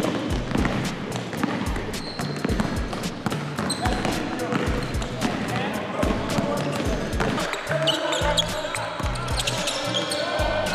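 Basketballs bouncing on a hardwood gym floor during dribbling drills, under background music with a steady beat of about two thumps a second.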